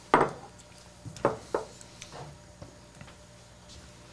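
Tasting glasses knocking on a bar top: a sharp knock right at the start, then two more close together about a second later and a fainter one after.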